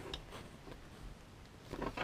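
Faint handling of a plastic inspection-camera handset and its cable, with a few light clicks near the end.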